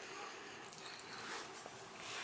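Quiet room tone: a faint, even hiss with no distinct sound.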